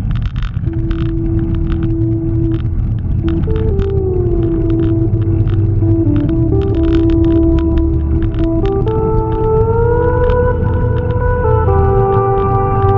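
Soundtrack music: sustained organ-like synth tones that hold and slide in pitch over a heavy low bass, with light percussive clicks.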